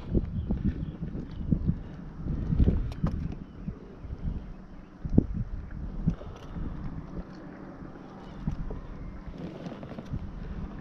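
Wind rumbling on the microphone aboard a kayak, with scattered light knocks and taps from handling a caught redfish in the boat.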